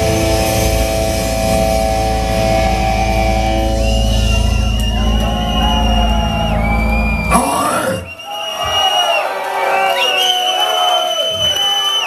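A heavy metal band's final distorted guitar-and-bass chord held and ringing with cymbal wash, cut off sharply about seven seconds in, then the crowd cheering and shouting.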